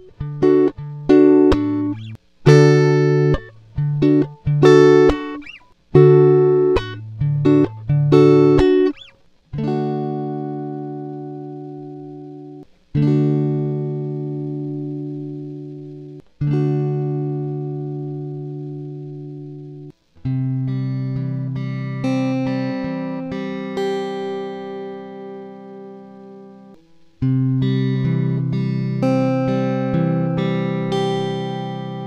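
Fender Stratocaster electric guitar playing the same chord passage in two tunings: first in equal temperament, then again in Peterson's sweetened tuning. Each take opens with quick, short chords cut off sharply, then moves to chords left to ring and fade, with single picked notes over the ringing chords in the later take.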